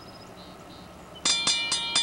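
A railroad warning bell starts ringing just over a second in, in rapid clanging strikes about four a second, each with a bright ringing tone.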